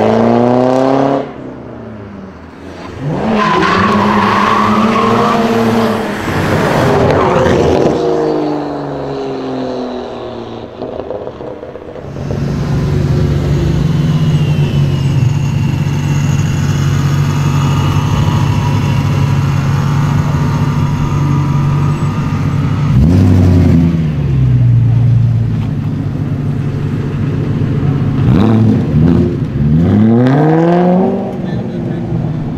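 BMW E92 3 Series engines: one car accelerating hard, its revs climbing in pulls, then another idling and rolling slowly with short throttle blips that rise in pitch near the end.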